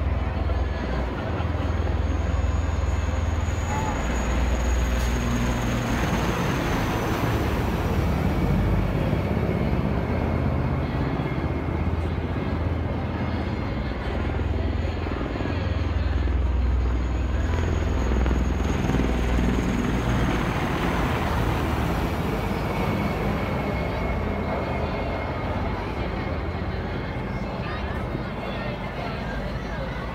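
Engines of military parade machinery passing: a steady, loud low drone that swells and fades, with a high whine that rises and falls away twice, once near the start and again about halfway through.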